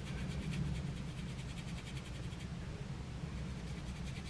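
Faint, quick back-and-forth strokes of a makeup brush blending powder on skin, over a steady low hum.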